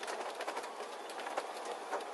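Steady road and cabin noise inside a slowly rolling motorhome, with a few faint clicks of interior rattle.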